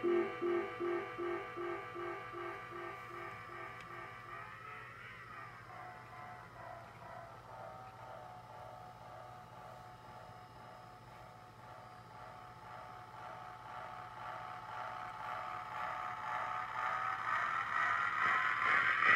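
Dreadbox Dysphonia analog synthesizer playing a sequenced pattern of repeated pulsing notes, about three a second. The low notes drop out a few seconds in, leaving a quieter, higher pattern, and near the end the sound swells and grows brighter.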